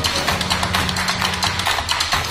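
Background music with a fast, steady percussive beat over a sustained bass line.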